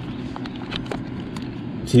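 A few light plastic clicks as a pink cartridge is twisted off a 3M half-face respirator's facepiece, over a steady low rumble in the background.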